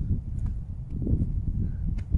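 Footsteps on a dirt path, with an uneven low wind rumble on the microphone.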